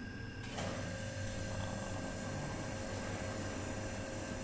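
Steady low background hum, like a fan or air conditioning, with a faint steady tone that comes in about half a second in. No distinct event is heard.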